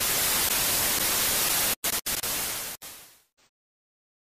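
Television static: an even white-noise hiss, broken by a couple of brief dropouts about two seconds in and cutting off about three seconds in.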